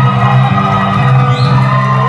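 Band music: sustained held chords over a steady low bass note, with a short rising slide a little past halfway.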